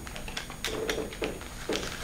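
Christmas wrapping paper crackling in short bursts as a small gift is handled and unwrapped, with a faint murmured voice in between.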